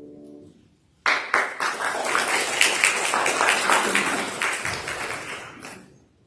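A sustained musical chord dies away in the opening moments. Then, about a second in, a congregation breaks into applause, many quick claps that fade out near the end.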